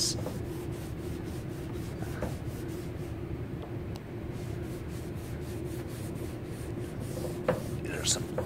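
Cloth rag rubbing back and forth over a painted car panel, wiping off brake fluid, in a run of faint repeated strokes. A steady low hum sits underneath.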